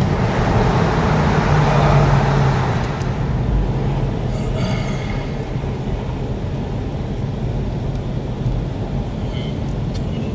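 Porsche Boxster 986S's 3.2-litre flat-six engine and tyre noise heard from inside the cabin while driving. The engine is louder for the first two or three seconds, then eases off to a lower steady level.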